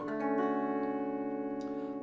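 Electric guitar struck once on a D major 7 chord, which rings on and slowly fades.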